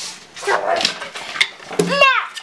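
An English bulldog puppy and its mother play-fighting: irregular scuffling and short dog vocal noises, the loudest a brief pitched yelp just before the end.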